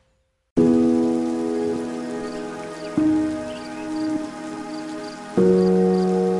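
Background music begins about half a second in after a brief silence: sustained chords that change twice, over a soft hiss with a light, even ticking high above.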